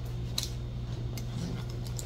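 Two faint clicks of a small glass cup pressed into puff pastry on a parchment-lined metal baking tray, over a steady low hum.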